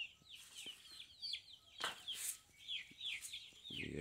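Chicks peeping: a steady run of short, high chirps that fall in pitch, several a second, with a couple of brief scuffing noises about two seconds in.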